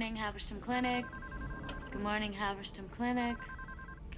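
Electronic office telephone ringer trilling in repeated warbling bursts, as incoming calls keep ringing at a reception desk, between short phrases of a woman's voice.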